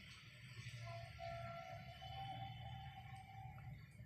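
Faint distant music with one long held note, over a low room hum.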